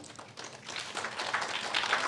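Audience applauding, starting about half a second in and growing louder.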